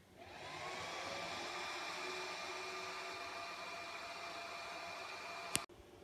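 Alcatel-Lucent network switch's cooling fans spinning up at power-on. They rise in pitch over the first second, then run steadily with a whirring whine, and cut off abruptly with a click shortly before the end.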